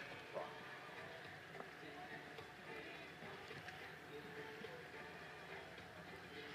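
Faint background ambience with distant, indistinct voices.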